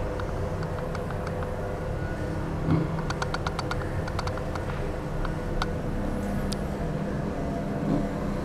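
Mitsubishi traction elevator car riding upward: a steady low hum of the car in motion, with a thump a little under three seconds in and a run of quick light clicks just after.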